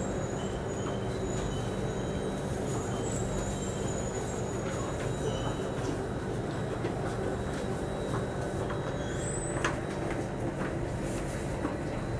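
Interior noise of a Singapore Circle Line MRT train pulling into a station: a steady rumble of wheels and motors with a faint high whine, and one brief knock about nine and a half seconds in.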